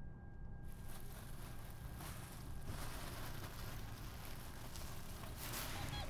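SUV engine idling, heard from inside the cabin as a steady low rumble with a faint hiss.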